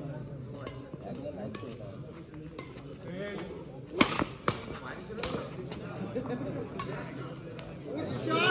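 Badminton rackets striking a shuttlecock in a doubles rally, a crisp hit about every second. The loudest hit is a smash about four seconds in, with another sharp hit half a second after it. Crowd chatter runs underneath.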